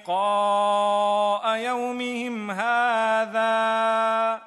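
A man reciting Quranic Arabic in a slow melodic chant, holding long, steady notes with a few short breaks between phrases.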